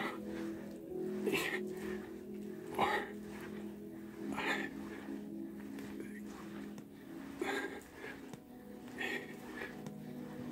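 A man's effortful breaths, one with each push-up about every one and a half seconds, over steady background music.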